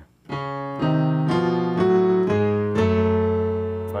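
Keyboard in a piano sound playing a walk of about six chords, one every half second or so, the last one held. The right hand climbs C-sharp, E-flat, F, F-sharp, G-sharp to A while the left hand walks down C-sharp, C, B, A, G-sharp to F-sharp, in contrary motion. This is a gospel passing-chord approach in A major.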